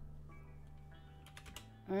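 A few keystrokes on a computer keyboard, typing a short terminal command, about a second and a half in.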